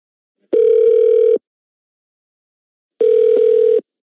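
Telephone ringing tone on the caller's line: two steady mid-pitched beeps, each just under a second long and about a second and a half apart. The number is being redialled and is ringing, waiting to be answered.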